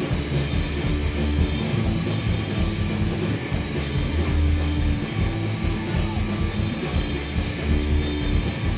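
Live rock band playing an instrumental stretch of a song, with electric guitars and a drum kit, loud and steady without vocals.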